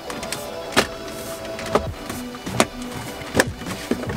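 Plastic pins and tabs of a BMW F30 radio trim panel clicking into the dashboard as the panel is pressed down: a handful of sharp clicks about a second apart, over background music.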